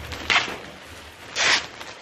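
Clear plastic poly bag crinkling in two short rustles, about a second apart, as bagged clothing is lifted out of a cardboard box.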